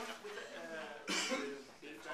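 A person coughs once, briefly, about a second in, over quiet background talk.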